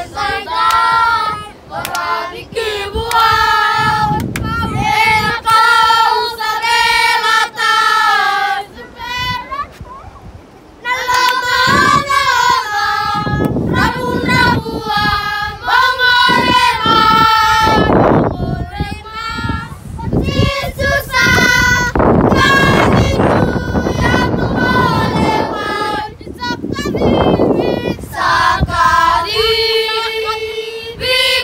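A group of children singing together, unaccompanied, in long held notes, with a few loud bursts of noise in the second half.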